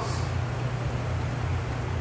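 Steady background noise in a pause between spoken phrases: a low, even hum under a broad hiss, with no distinct events.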